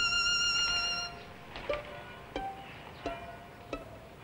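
Violin music: one long note held with vibrato, then sparse plucked pizzicato notes, one about every two-thirds of a second.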